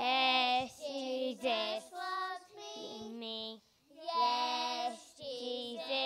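A small group of young children singing a song together into a microphone, in held sung phrases with a brief pause for breath about halfway through.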